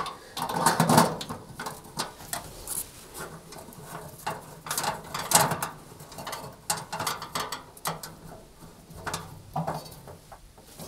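Irregular light clicks and scrapes of a very long screwdriver turning the screw that fixes a new grill element's rear bracket inside a cooker's grill compartment.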